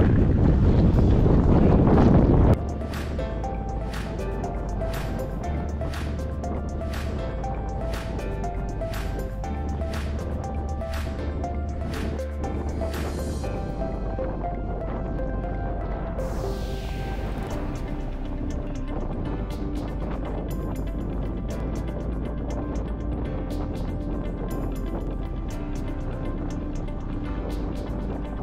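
Wind buffeting the microphone for about two seconds, cutting off suddenly. Then background music with a steady beat runs on.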